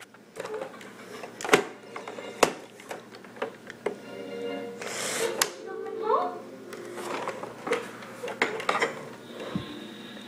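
Television sound with music and voices, over a string of sharp clicks and knocks from handling, and a short hiss about five seconds in. No vacuum cleaner is heard running.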